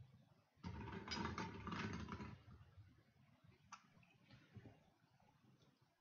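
Plastic draw balls rattling against each other and the glass as a hand stirs them in a glass bowl, a dense clatter lasting nearly two seconds. A single sharp click follows a little later.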